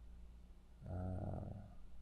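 A man's drawn-out hesitation sound, "uh", about a second in, over a low steady hum.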